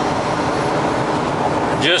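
Steady road and wind noise inside the cabin of a 1998 Ford E-350 15-passenger van cruising at highway speed, an even rushing hiss with no distinct engine note.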